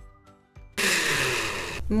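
Countertop blender running at high speed for about a second, blending fresh corn kernels and eggs into batter, then cutting off abruptly.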